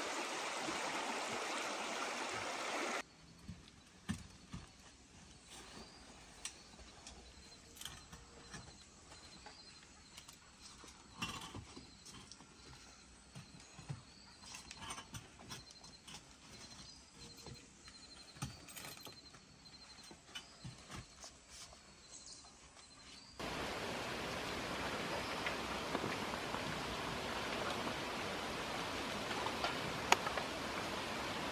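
Running stream for the first three seconds. Then a quiet stretch in the woods with scattered sharp knocks and clicks from a metal climbing tree stand and faint, repeated high chirping. From about 23 seconds in, a steady hiss.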